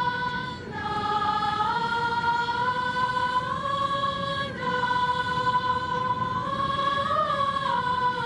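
A choir singing a slow melody in unison, in long held notes that move in small steps, with a brief dip in level about half a second in.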